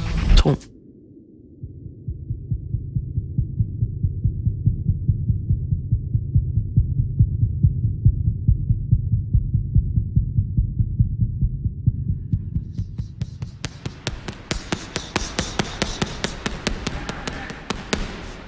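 A deep, muffled, regular pulse like a heartbeat, with a low hum. About thirteen seconds in, rapid sharp smacks begin: boxing gloves striking focus pads.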